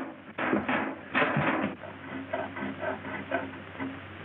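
A small saw blade rasping back and forth on a metal window bar, in short regular strokes about three a second.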